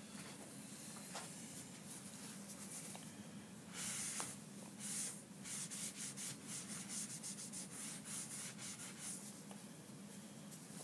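Cloth towel rubbing back and forth over a wet painted panel, wiping permanent marker off with graffiti cleaner. It starts about four seconds in as quick hissy strokes, about two or three a second.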